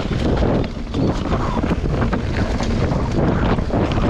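Mountain bike riding fast down a dirt forest trail: wind rumbling over the camera's microphone, with tyres rolling on dirt and frequent short knocks and rattles from the bike over bumps.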